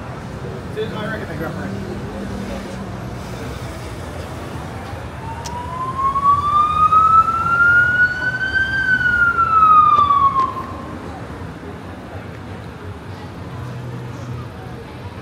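Emergency vehicle siren wailing over street traffic: one slow rise in pitch over about four seconds, then a quicker fall, loudest from about six to ten seconds in.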